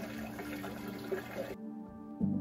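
Water trickling and splashing inside a hydroponics tower as it circulates, under soft background music; the water sound cuts off suddenly about one and a half seconds in, leaving only the music.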